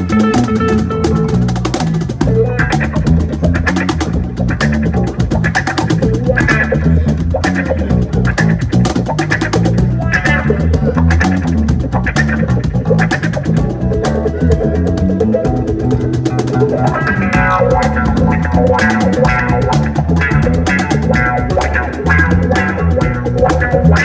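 Live instrumental groove of a cigar box guitar, a large bass cigar box guitar and a Tycoon Percussion cajon, with plucked melody notes over a deep bass line and a steady slapped cajon beat.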